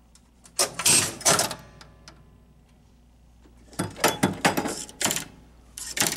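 1965 Gottlieb Bank-A-Ball electromechanical pinball machine clattering through its start cycle: two bursts of rapid relay and switch clicking about three seconds apart, with a third starting near the end.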